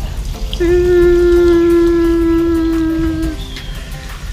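A single long, steady pitched tone with a full set of overtones, starting about half a second in and held for nearly three seconds before it cuts off.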